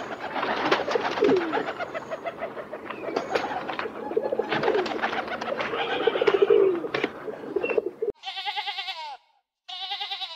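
Southern crowned pigeons cooing: repeated low, falling coos over a busy background of short clicks. About eight seconds in the sound cuts to a sheep bleating twice, each bleat wavering.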